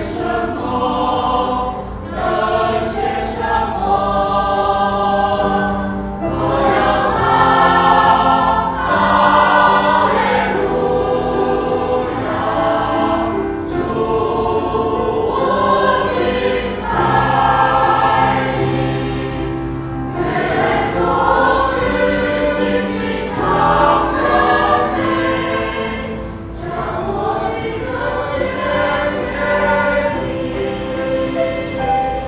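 Mixed church choir of men and women singing a sacred choral piece in sustained chords, the phrases swelling and easing.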